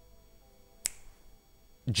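A single short, sharp click a little under a second in, over faint steady tones.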